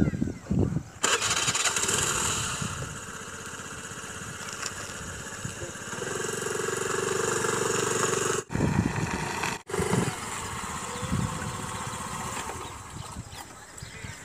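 A small motor scooter's engine is started about a second in and then runs steadily as the scooter is ridden. The sound drops out briefly twice a little past the middle.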